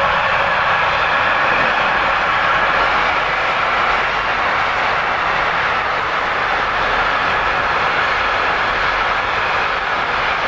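Container freight train rolling past: a steady rolling noise of wagon wheels on the track that holds level throughout.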